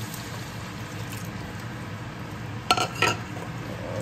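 Milk pouring into a hot enamelled cast-iron pot of bacon, onions and mushrooms, sizzling steadily. Two brief sharp clinks come near the end.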